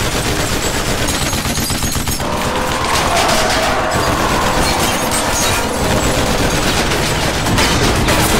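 Rotary multi-barrel machine gun (minigun) firing a long, continuous stream of rapid shots.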